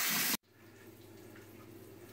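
Kitchen tap running onto pinto beans in a mesh sieve, cut off abruptly about a third of a second in. Then quiet room tone with a faint steady low hum.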